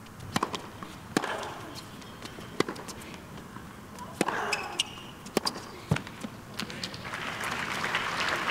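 Tennis rally on a hard court: a series of sharp racquet strikes on the ball and ball bounces, with a player's short grunt on a couple of the shots. Crowd applause starts rising near the end as the point finishes.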